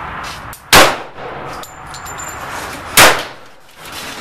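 Two shots from a Ruger LCP .380 micro pistol, about two seconds apart, each very loud and sharp, with a short ringing tail.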